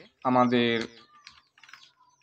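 A spoken word in the first second, then a few faint computer-keyboard keystrokes in the second half.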